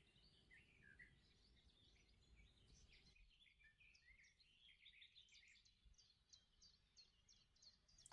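Near silence with faint bird chirps throughout, becoming a quicker run of short high chirps in the second half.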